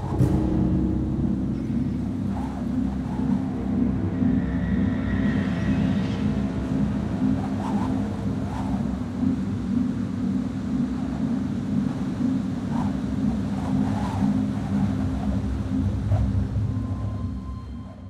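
Steady low rumble of strong wind as a dust storm sweeps over a city at night, with a few faint higher chirps in the background.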